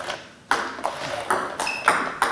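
Table tennis ball bouncing on the table and struck by rackets in a multi-ball forehand loop drill: a run of short, sharp clicks that starts about half a second in, roughly four in a second and a half.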